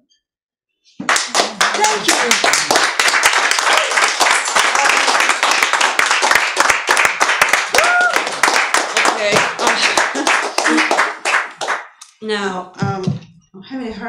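A small audience applauding and cheering in a room, starting abruptly about a second in, with a whoop in the middle, and dying away after about ten seconds; a voice then speaks briefly near the end.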